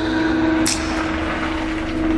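Scania Citywide diesel city bus pulling in to a stop, its engine and tyres giving a steady rumble, with a short hiss of air about two thirds of a second in.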